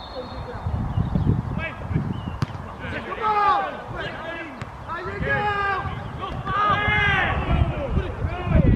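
Footballers shouting calls to each other across an open pitch during a set piece, several loud calls in the second half, with a single sharp thud of the ball being kicked about two and a half seconds in. Wind rumbles on the microphone.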